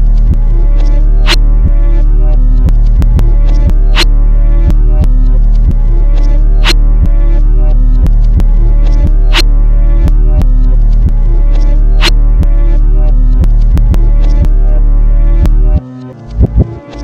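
Instrumental hip-hop type beat: a heavy, sustained bass line under a chordal melody, with a steady pattern of drum hits and a stronger hit about every two and a half seconds. The bass and beat cut out suddenly just before the end.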